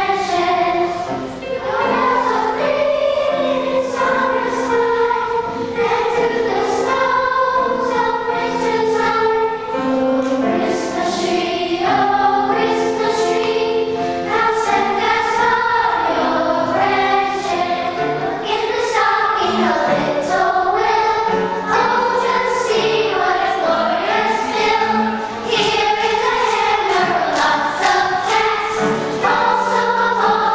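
Children's choir singing a Christmas song, many young voices together, sustained without a break.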